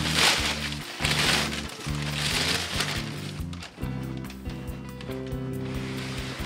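Background music with steady held notes, over several bursts of crinkling and rustling packing paper being pulled about inside a cardboard box.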